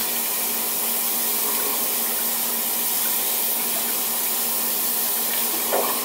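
Kitchen tap running steadily into the sink, an even hiss of water that starts abruptly and holds level.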